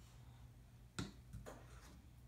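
Spoon clicking against a bowl: one sharp click about a second in, then a softer one just after.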